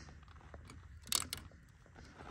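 A few light clicks, about a second in, from the choke lever and wire linkage on a Generac generator's engine being moved by hand, with the engine stopped. The choke is held back only by a bungee cord that does not pull it all the way back.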